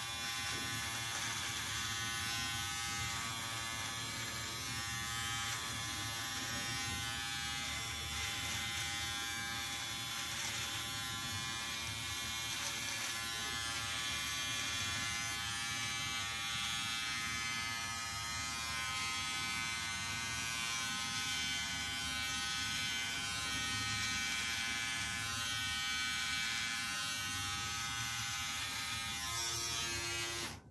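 Nova electric beard trimmer buzzing steadily as it cuts stubble along the jaw and neck.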